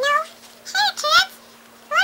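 A person's squeaky, high-pitched character voice for toy horses: three short squeals that rise and fall, and another starting near the end.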